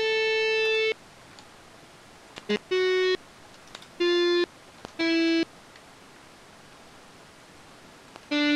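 Guitar Pro tab software sounding single notes as they are entered: four steady, evenly held tones, each under a second, starting and cutting off abruptly and stepping down in pitch one after another. Faint clicks fall between them.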